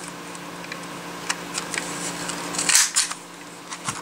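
A hand-held square craft paper punch pressed down through a scrap of card stock: a few small clicks and paper rustles, then a louder snap about three seconds in as it cuts through.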